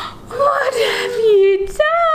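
A woman's drawn-out wordless exclamations: a held, slightly wavering call, then near the end a long 'ohh' that falls steadily in pitch, a reaction of surprise and amusement.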